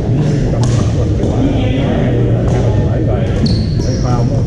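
Badminton rackets striking a shuttlecock, sharp cracks every second or so in a rally, ringing in a large gym hall over the steady chatter of many players' voices. A brief high squeal near the end.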